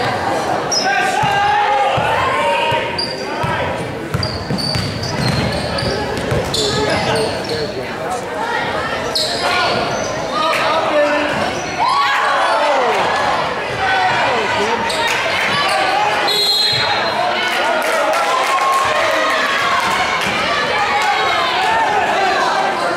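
Basketball game on a hardwood court in a large, echoing gym: the ball is dribbled and bounced, with short squeaks of sneakers on the floor, under players' and spectators' calls.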